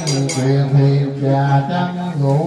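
Male Buddhist funeral chanting: a single man's voice intoning in long, level held notes that step between a few pitches. A few light metallic clinks ring right at the start.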